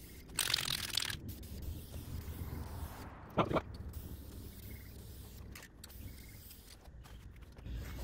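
Aerosol can of vinyl and fabric spray hissing in one burst of about a second near the start, spraying a fabric webbing strap. A brief sharper sound follows about three and a half seconds in.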